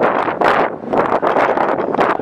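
Cruise ship lifeboat davit winch hoisting the lifeboat back aboard: a loud cranking, an irregular, rough rattling noise with no steady pitch.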